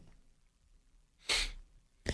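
One short, sharp burst of breath noise from a person close to the microphone, about a second and a half in, with a low pop as the air hits the mic. The rest is near silence in a small, deadened studio.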